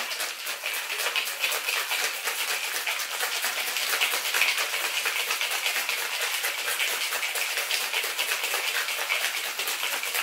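Ice cubes rattling rapidly and steadily inside a copper cocktail shaker being shaken hard, with a spring coil in with the ice to whip the egg-white mix into foam.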